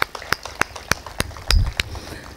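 A few people clapping their hands in a slow, even beat, about three claps a second, with a low thump about three-quarters of the way through.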